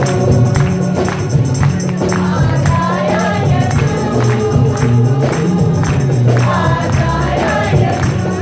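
Live gospel worship song: a man's voice singing a melody over acoustic guitar and a bass line, with a tambourine played on a steady beat.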